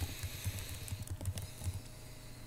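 Keys on a computer keyboard being typed, heard as a run of dull knocks about four a second that stops shortly before the end.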